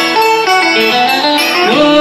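Cải lương guitar accompaniment: a plucked melodic line of held notes joined by sliding pitch bends, in the style of the scalloped-fret guitar used in vọng cổ music.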